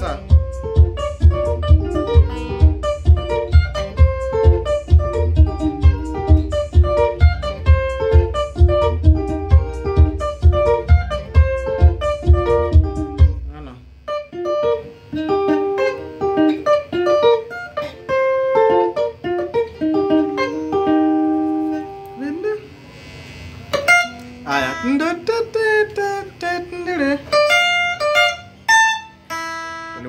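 Electric guitar picking benga lead lines over a recorded rhythm backing with a steady bass-heavy beat. About 14 seconds in, the backing stops and the guitar plays on alone, with bent notes in the last several seconds.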